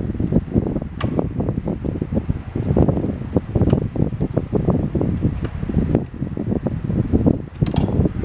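Screwdriver turning a bolt into the motherboard mount inside the printer's sheet-metal electronics bay, with dense scraping, rattling and knocking of the tool and hands against the metal frame and a sharp click about a second in.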